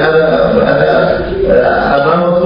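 A man speaking Arabic into a microphone, his voice running on with drawn-out, halting sounds.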